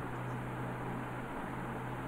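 Steady background hiss with a faint low hum: room tone of the recording.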